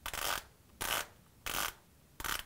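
Hand rubbing over a cycling shoe on the foot: three short, evenly spaced brushing sounds about two thirds of a second apart, from feeling for the ball of the foot through the shoe.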